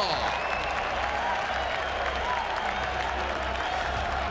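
Hockey arena crowd applauding and cheering after a goal, an even wash of crowd noise over a steady low hum.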